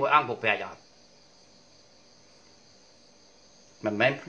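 A man speaks Khmer for under a second, then pauses for about three seconds in which only a faint, steady high-pitched buzz remains; he starts speaking again near the end.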